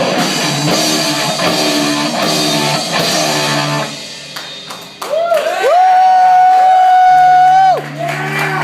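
Live rock band of electric guitar, bass and drums playing hard. About four seconds in the drums drop out. A loud, high held note, likely an electric guitar, follows: it bends up twice, then sustains steadily and stops sharply just before the end.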